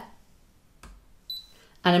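Brother ScanNCut SDX2200D cutting machine's touchscreen being tapped: a light tap a little under a second in, then a short, high single beep from the machine registering the key press as a shape is selected.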